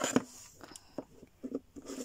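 Plastic pieces of a folding star-to-cube puzzle clicking and rubbing as they are folded by hand. There is one sharp click just after the start, then several lighter clicks.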